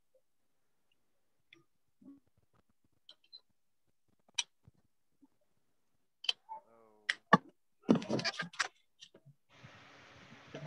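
Video-call audio cutting in and out while a microphone problem is being fixed: mostly dead silence broken by scattered sharp clicks and brief snatches of voice, then a steady hiss comes in near the end.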